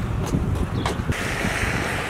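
Wind buffeting the camera microphone in an irregular low rumble, with a hiss like car tyres on a wet road setting in about a second in.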